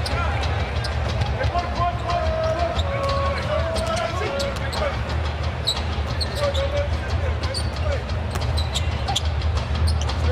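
Basketball dribbled on a hardwood court, a run of short bounces, over the steady hum of an arena crowd.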